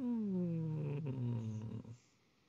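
A man's long, wordless hum or moan that slides steadily down in pitch and then holds low before trailing off near the end.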